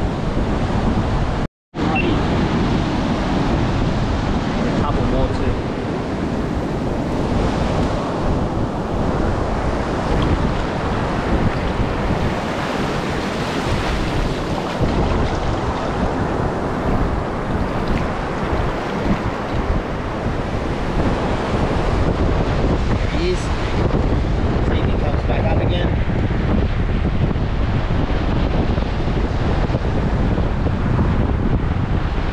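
Ocean surf breaking and washing up the sand, a steady rush with wind buffeting the microphone. The sound cuts out completely for a moment about a second and a half in.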